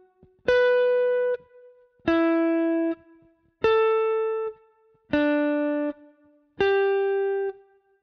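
Clean electric guitar playing single notes on the B string in ascending perfect fourths (the circle of fourths): B, E, A, D, G. There are five notes, one about every second and a half, each ringing for just under a second before it is muted.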